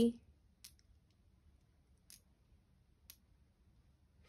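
A few faint, sharp clicks of Montessori stamp-game tiles knocking together as a hand slides them into a group, three of them clearer and roughly a second apart.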